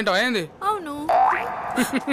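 Cartoon-style comedy sound effects: warbling tones that wobble up and down, then a rising whistle-like glide about a second in.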